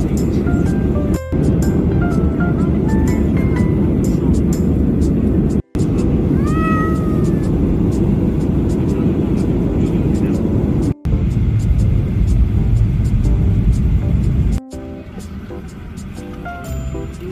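Steady airliner cabin noise from the jet engines and air system, under light background music of short high notes. About six seconds in, a single meow rises and falls. The cabin noise drops away near the end.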